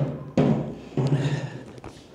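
Aluminium pannier case knocking and thudding as it is handled and set down on a tiled floor. Three knocks come in the first second, each with a short ringing tail.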